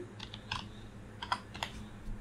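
Computer keyboard keys being pressed: about six separate, unevenly spaced keystrokes as digits are typed in one at a time.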